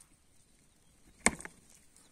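Rams butting heads: one sharp crack of horn on horn about a second and a quarter in, followed at once by a smaller second knock.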